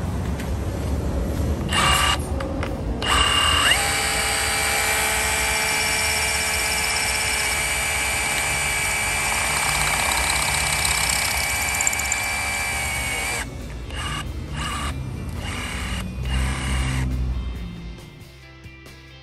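An 18 V brushless Bosch GBH 187-LI cordless rotary hammer hammer-drilling into concrete with an SDS-plus masonry bit. It gives two short bursts, then runs for about ten seconds with a steady motor whine that rises as it spins up. Several more short bursts follow near the end.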